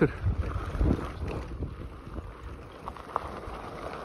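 Wind buffeting the microphone over the low rumble and crunch of bicycle tyres rolling on a gravel track.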